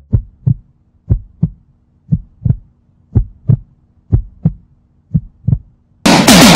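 Heartbeat sound effect: six slow double thumps, lub-dub, about one pair a second, over a faint steady hum.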